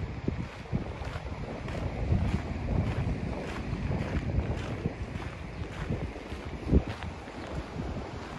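Wind buffeting the microphone over the rush of surf breaking on rocks, with footsteps crunching on a gravel path at about two a second. A single low bump of wind or handling stands out near the end.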